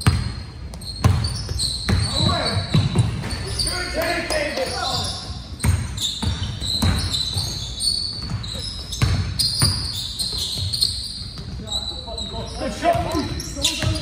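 Basketball dribbled and bouncing on a hardwood gym floor, sharp irregular bounces echoing in a large hall, with players' voices calling out.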